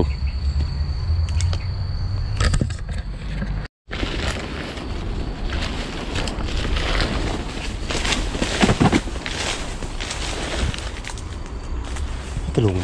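Footsteps pushing through dry leaf litter and tall grass, with crackling and rustling of the vegetation. Before a brief cut about four seconds in, a steady insect drone sits over a low rumble of wind or handling noise.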